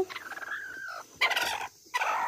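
A domestic hen sitting on her nest cries out in a long, slightly falling call as she is pushed aside by hand, then gives a short harsher squawk about a second and a half in. This is the protest of a broody hen disturbed on the eggs.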